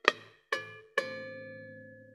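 Electric bass guitar sounding three chime-like artificial harmonics, each plucked sharply and left to ring. The third rings on for about a second.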